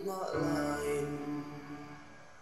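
Slow, solemn song: a sung vocal line over held instrumental chords, getting quieter near the end.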